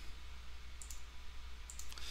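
Two computer mouse clicks, about a second apart, over a steady low electrical hum.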